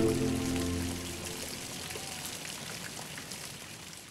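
Low held string notes fade out over the first second or so. They give way to the steady trickle and splash of water from a tiered stone fountain.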